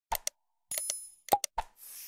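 End-card sound effects: a pair of mouse clicks, a short bell-like ding, three more quick clicks, then a whoosh near the end.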